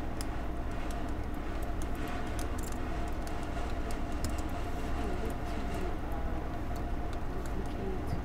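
Computer mouse and keyboard clicks, light and irregular, over a steady low hum of room and computer noise.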